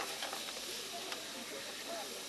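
Steady sizzling hiss of pieces of meat searing in hot frying pans.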